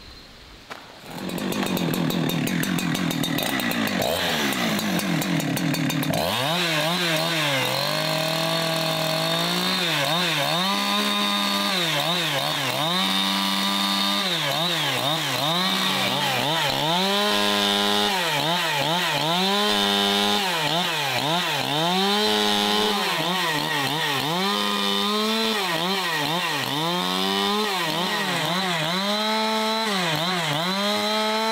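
Two-stroke chainsaw ripping a log lengthwise: the engine runs low for the first few seconds, then goes to high revs about six seconds in. Its pitch repeatedly sags and recovers every second or two as the chain bites into the wood under load.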